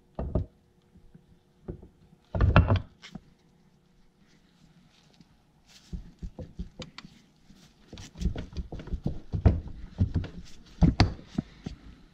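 Cast-iron parts of a Farmall H hydraulic pump knocking and clunking as a housing section is worked onto the pump body by hand, on a wooden block. A cluster of knocks comes a couple of seconds in; after a few quiet seconds a run of knocks follows through the second half, the loudest near the end.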